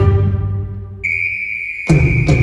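Live cello music: a low note struck and held, slowly fading, joined about halfway by a steady high whistle-like tone. A heavy drum hit lands near the end as a beat begins.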